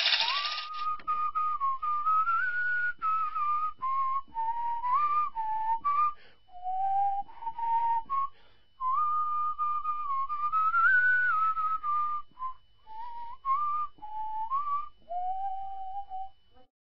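A person whistling a slow melody, one clear note at a time in phrases broken by short pauses.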